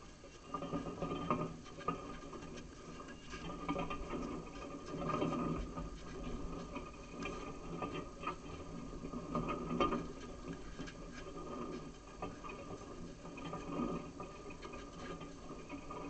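Tennis balls struck by rackets in a clay-court rally: faint, irregular pops a second or two apart over a steady low hum.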